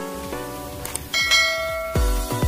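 Background music with a light click sound effect, followed about a second in by a bright bell-chime sound effect that rings and fades: the sound of a subscribe-button animation's notification bell.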